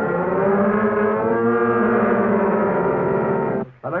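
A sustained chord of many pitches on a keyboard instrument, struck right after a count-in. It is held for about three and a half seconds and then cut off abruptly.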